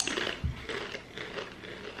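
Crunching of small crispy potato chips being chewed: an irregular crackle that fades after about a second and a half.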